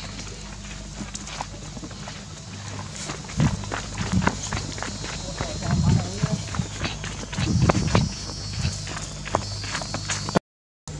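Footsteps on a sandy dirt path strewn with dry leaves, a quick run of steps and rustles that starts about three seconds in, over a steady low hum, with a few brief low voice sounds among them.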